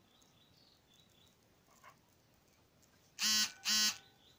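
An animal calling twice in quick succession near the end: two short, loud, pitched calls about half a second apart. Faint high chirping runs underneath.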